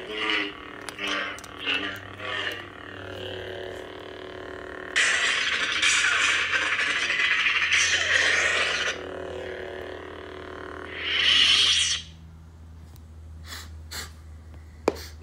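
Electronic sound effects from a toy lightsaber: a steady buzzing hum with short swing sounds, then a loud hissing effect for about four seconds and another brief one, after which the hum cuts off as the saber powers down.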